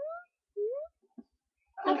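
A high voice giving two short rising whimpers, like a puppy's, one after the other, with a faint click about a second later.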